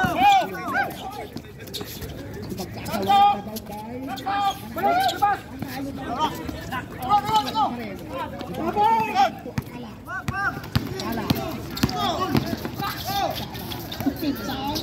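Players and spectators shouting and calling out on an outdoor basketball court, in short loud calls throughout, with a few sharp knocks from the ball and feet on the court.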